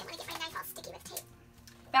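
Faint rustling and handling of tightly wrapped packaging, dying away to near quiet a little past halfway, with a woman's voice starting at the very end.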